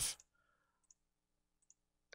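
Two faint computer mouse clicks, about a second in and near the end, in an otherwise near-silent room.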